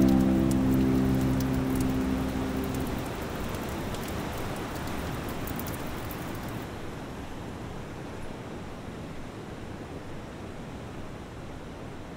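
Patter of water drops falling, like light rain, under a sustained music chord that dies away over the first three seconds. The sharp drip ticks stop about halfway, leaving a soft hiss that slowly fades.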